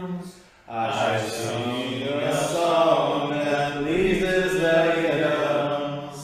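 A single low voice chanting the verses of a Buddhist song in long, slow melodic phrases, taking a breath about half a second in and again at the end. It comes over a video call, thin and cut off in the highs.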